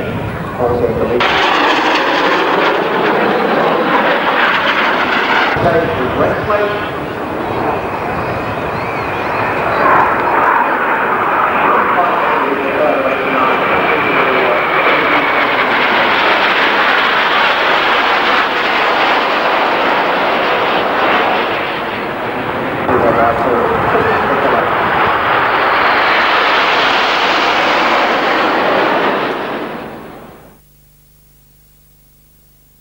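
BAE Hawk T1 jet trainers flying past in formation, their jet engines making a loud roar that swells and eases several times. About ten seconds in, a whine falls slowly in pitch, and the sound cuts off at the end.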